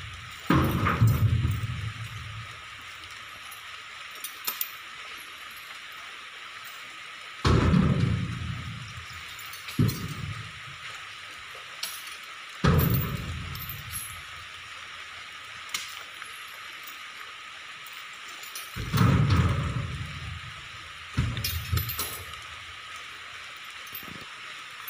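Steady hiss of heavy rain, broken by several heavy thuds a few seconds apart, each with a low ringing tail: oil palm fruit bunches being thrown up into a truck's cargo box.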